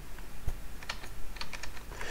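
Computer keyboard keys clicking: a handful of separate, irregular key presses.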